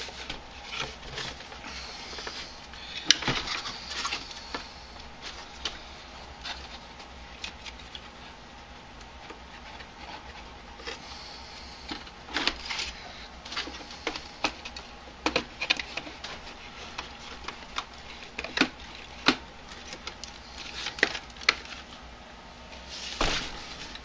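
Irregular clicks, taps and light knocks of hard plastic parts being handled as a radio-controlled crawler's body is fitted onto its chassis, the sharpest knock about three seconds in.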